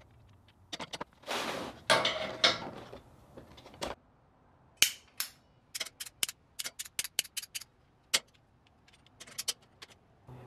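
A hand tubing bender being handled on a steel bench: its metal parts clatter and scrape, then a run of quick, sharp clicks, about four a second, as a copper tube is fitted and bent in it.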